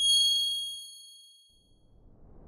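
A logo-sting chime sound effect: one bright, high ding struck once, ringing with several high tones and fading away over about a second and a half.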